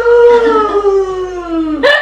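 A man's loud, long yell of excited surprise, one drawn-out cry whose pitch falls slowly, followed near the end by a short second shout.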